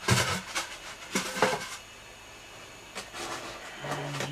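Rustling and scraping of packing material and a plastic container being handled while unpacking a shipping box: two short bursts in the first two seconds, then quieter.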